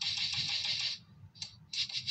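Scratchy rubbing noise on a phone's microphone for about a second, then two short scratches near the end.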